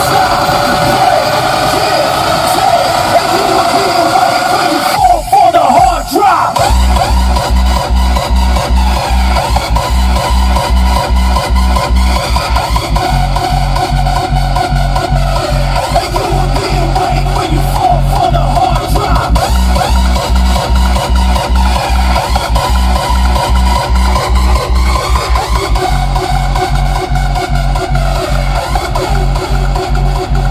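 Loud music played through a car audio system with a Ground Zero GZHW 30X 12-inch subwoofer, heard inside the cabin. For the first few seconds only the upper parts of the track play; about six seconds in, heavy bass beats come in and keep a steady rhythm.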